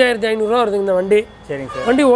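Speech only: a person talking continuously, which the recogniser did not transcribe.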